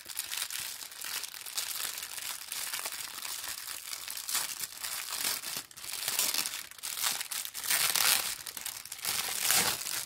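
Clear plastic packaging bag of silicone stretch lids crinkling continuously as hands press and work at it, with louder crinkles about eight seconds in and again near the end.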